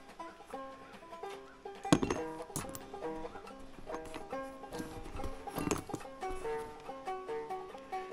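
Quiet background banjo music, a plucked tune of stepwise notes, with a few sharp clicks from small metal tuning-peg parts being handled, the loudest about two seconds in and another near six seconds.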